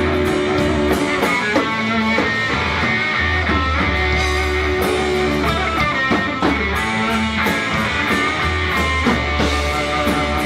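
Live blues-rock band playing without vocals: electric guitar over bass guitar and a drum kit, with steady cymbal strokes and strong bass notes.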